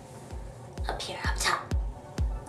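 Electronic outro music starting about a third of a second in, with a steady kick-drum beat of about two beats a second.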